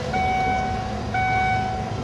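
An electronic warning beeper sounding a steady pitched tone in long beeps about once a second, separated by short gaps, over a low background rumble; it is called annoying.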